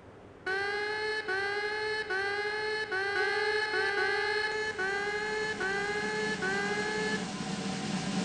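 An electronic tone repeated about nine times, a little more than once a second, each note sliding slightly upward in pitch; it starts about half a second in and stops near the end.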